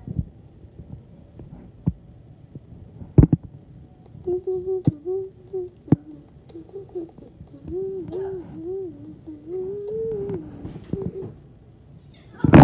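A child humming a wordless tune in short rising-and-falling notes from about four seconds in, with a few scattered thumps before it, the loudest about three seconds in.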